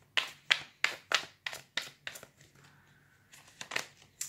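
Tarot cards being shuffled by hand: a run of about seven sharp card slaps, roughly three a second, a short pause, then two more snaps near the end as a card is drawn from the deck.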